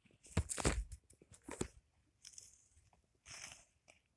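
Rustling and scuffing of stuffed toys and bedding being handled close to the microphone, in several short bursts, the loudest about half a second in.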